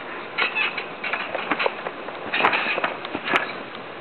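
Trampoline springs squeaking and clanking irregularly as a person bounces on the mat, with two sharper clicks about two and a half and just over three seconds in.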